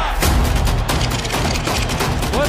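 Edited promo soundtrack: music over a low rumble, with a dense, rapid crackle that sets in sharply about a quarter second in.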